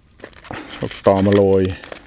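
Crinkling and crackling of a thin plastic tray as small green eggplants are picked out of it by hand. A man's voice speaks a few words partway through.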